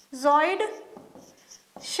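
Whiteboard marker writing on a whiteboard in short, faint strokes. A woman says one short word near the start, and that is the loudest sound.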